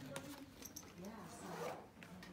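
Faint voices talking in the background, with a few small clicks and a short rustling rasp about a second and a half in.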